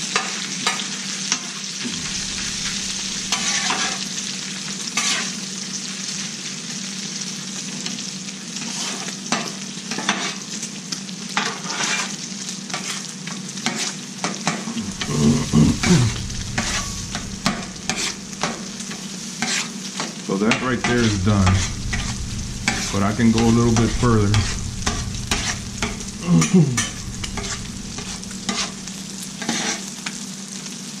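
Chorizo refried beans frying in bacon grease on a Blackstone steel flat-top griddle: a steady sizzle, with a metal spatula repeatedly scraping and chopping across the griddle top. A few louder, low, wavering sounds come in during the second half.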